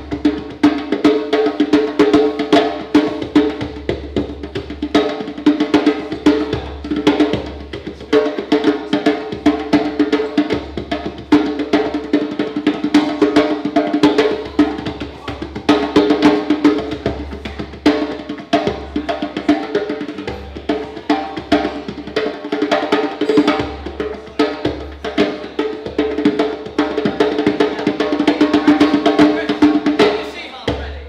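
Djembe played by hand in a fast solo of quick, dense strikes, over steady acoustic guitar chords.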